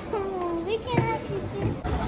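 A young child's high-pitched voice making a drawn-out, sliding call without clear words, with a short knock about a second in.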